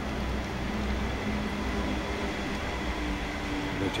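Steady low rumble of outdoor street and crowd background noise, with no distinct event in it. Right at the end a man's voice starts, saying "Benvenuti".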